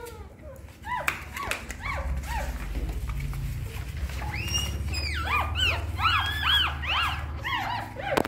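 Several hungry newborn puppies crying in short, high-pitched squeaks that rise and fall, a few at first, then many overlapping from about halfway through as they crawl to nurse.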